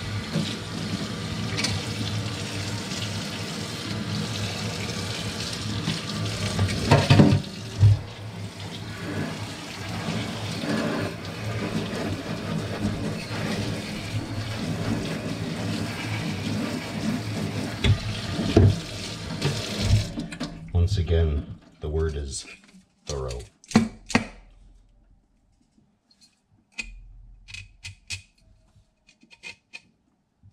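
Kitchen tap running into a stainless steel sink while a stainless steel sprouter is rinsed and rubbed by hand under the stream, with a few louder knocks of metal. About two-thirds of the way in the water stops, leaving scattered clicks and taps of the sprouter being handled over the sink.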